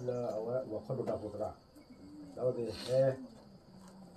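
A person speaking in short phrases, with a pause in the middle, over a steady high-pitched trill of insects.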